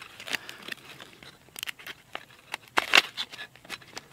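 Knife slicing open a foil MRE retort pouch, with crinkling of the pouch and a few short sharp clicks, the loudest about three seconds in.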